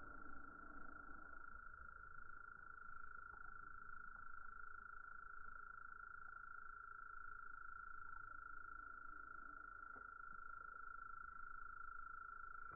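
A faint, steady high-pitched tone held without a break, over a low background rumble.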